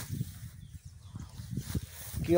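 Walking and handling noise as a phone is carried through tall pasture grass: soft, irregular low thumps with light rustling.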